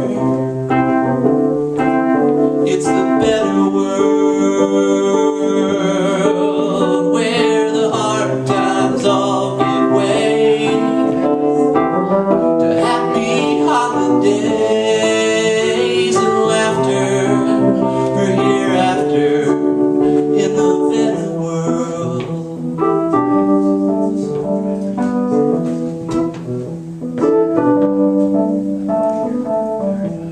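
A song played on a keyboard in sustained chords, with a man singing over it at times. The playing eases slightly in the last third.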